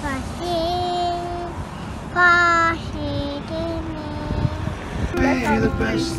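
A young girl singing in long held notes, each about a second or less, with short pauses between them.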